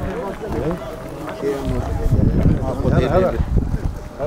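Men's voices talking in the background, with wind rumbling on the microphone for about two seconds from midway.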